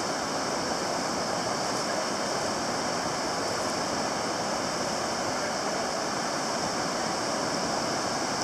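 Steady, even rushing of ocean surf washing on a beach, with no change in level.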